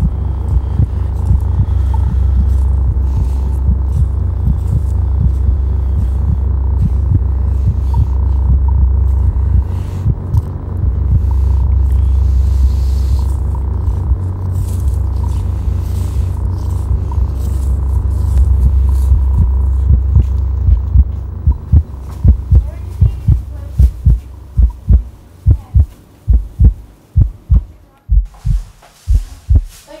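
A loud, steady low drone, which gives way about two-thirds of the way through to deep, regular thumps about twice a second.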